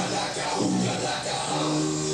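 Loud live band music, drums and amplified guitar: a dense, noisy wall of distorted sound with held low notes that shift to a new chord about one and a half seconds in.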